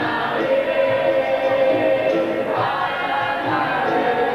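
Capoeira angola roda music: a group of voices singing a chorus together over the berimbaus and pandeiros of the bateria.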